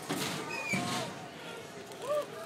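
Indistinct chatter and calls of children and adults with no clear words, including a brief high call about three quarters of a second in.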